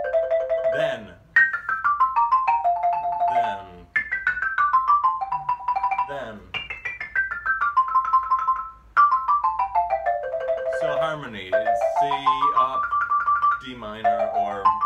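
Xylophone with rosewood bars played in double stops, two notes struck together with two mallets in quick strokes, as a practice exercise. Four fast runs descend in parallel, each ending on a repeated pair, and a rising run follows near the end.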